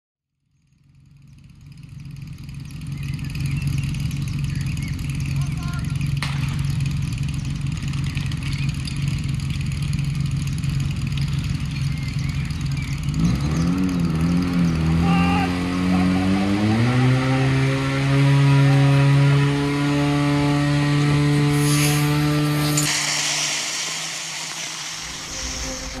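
An engine running steadily, then revving up in steps about halfway through, holding at high revs, and dropping off near the end.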